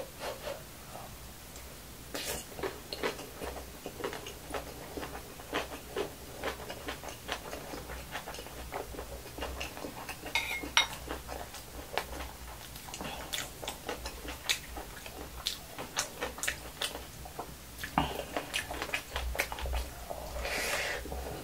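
Close-miked eating sounds: a metal spoon clinking on a glass bowl and scraping the pot, with chewing of fried rice. These come as many short clicks and taps throughout.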